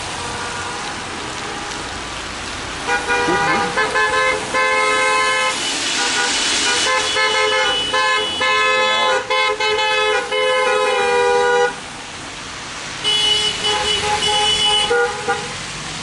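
Several car horns honking together in long, overlapping blasts with brief breaks. They start about three seconds in, stop around twelve seconds, and sound again soon after.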